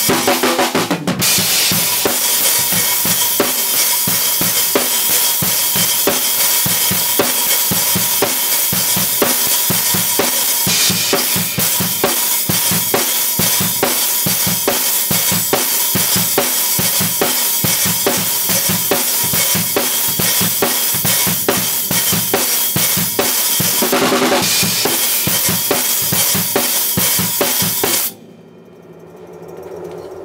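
Acoustic drum kit with bass drum, snare and cymbals playing a rock groove that speeds up into a fast up-tempo gospel shout groove. The playing stops suddenly near the end.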